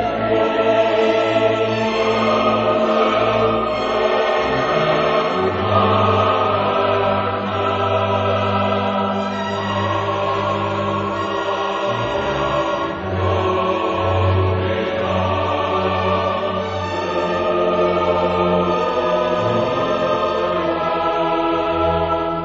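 Classical choral music with orchestra: a choir singing long sustained notes over the instruments.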